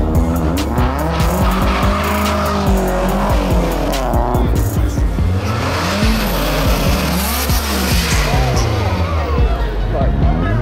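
A car engine revving up and down repeatedly, with tyres squealing from about halfway through as the car speeds past.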